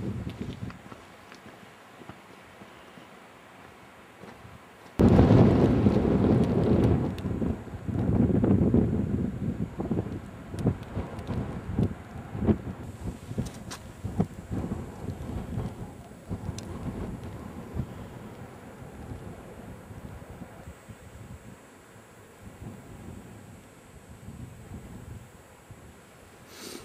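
Wind gusting across the camera microphone on an exposed cliff top. It comes in suddenly about five seconds in as a loud, low rumbling buffet, then rises and falls in gusts and slowly dies down.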